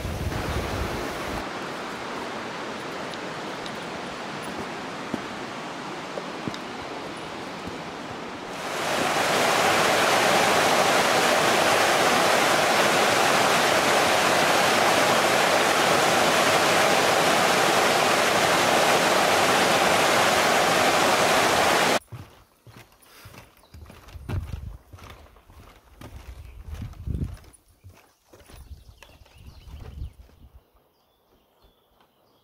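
Steady rushing of river water over a small weir, louder from about a third of the way in and cutting off abruptly about three-quarters of the way through. Then quieter, irregular footsteps knocking on the wooden planks of a suspension footbridge.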